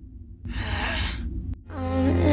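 A breathy sigh lasting about a second, over a low rumble. Music starts near the end.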